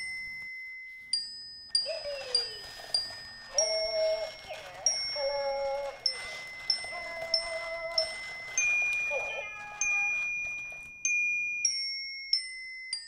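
A slow tune of single glockenspiel-like notes on struck metal bars, about two a second, each ringing and fading. Warbling, voice-like sounds come in under the notes through the middle.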